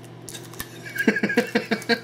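A man laughing. After about a second of quiet room tone comes a quick run of short laughs, several a second.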